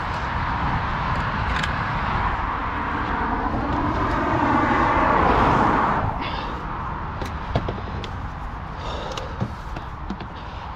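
A road vehicle passing close by, its noise swelling to loudest about five seconds in and then fading, over a steady low rumble. A few light knocks follow near the end.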